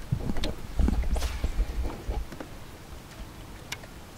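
Wind rumbling on the microphone, easing after about two seconds, with scattered light clicks and knocks from a fishing rod and reel as a lure is cast and reeled in.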